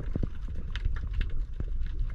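Underwater sound picked up by a head-mounted GoPro: many irregular clicks and crackles over a steady low rumble of moving water.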